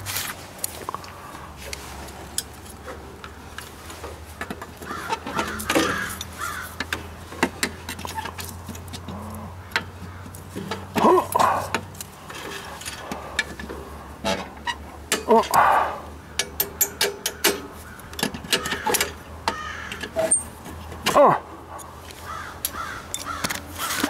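Pliers working at the cotter pin in a John Deere 2720 tractor's seat hinge: a long run of small metal clicks and clinks, thickest in the last third, with a few short calls over them.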